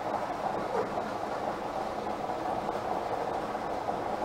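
Bingo balls tumbling in a clear plastic draw globe: a steady rattling rumble with no separate strikes standing out.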